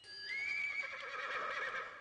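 A horse whinnying: one long, quavering call that starts about a quarter second in and fades near the end.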